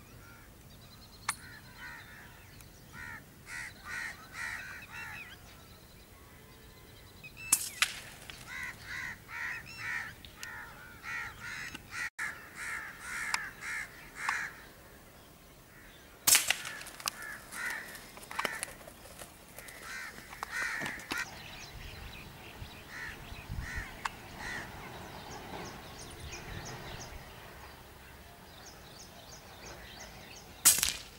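Birds calling in runs of rapid, harsh notes that come and go, with a few sharp cracks, the loudest about seven and sixteen seconds in.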